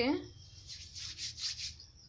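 Hands rubbing together to spread ghee over the palms: a few soft rubbing strokes over about a second.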